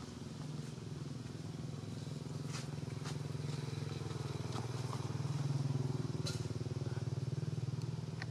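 A low, steady engine drone that grows louder to a peak about six seconds in, then eases slightly, with a few faint high ticks.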